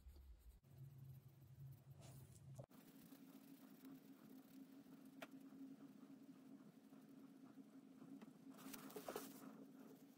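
Near silence: a low steady hum of room tone, with faint scratching of a cotton swab rubbed on the watch's bronze case, a little louder near the end.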